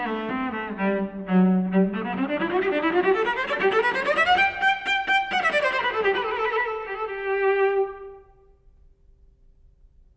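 Solo cello played with the bow: a quick run of notes climbing and then falling back, ending on a held note that stops about eight seconds in, followed by near quiet.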